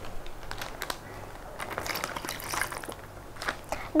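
Thin plastic zipper bag crinkling and rustling as milk is poured into it, with faint clicks of handling.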